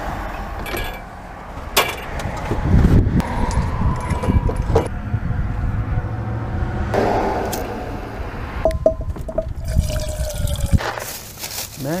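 Camp gear being handled at a truck's tailgate while a camp stove is set out: a few sharp clicks and knocks over a low rumbling noise.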